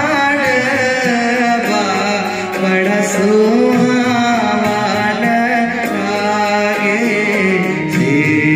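A man singing a traditional Mithila wedding song (vivah geet), accompanying himself on a harmonium. His voice bends and ornaments the melody over the harmonium's held notes.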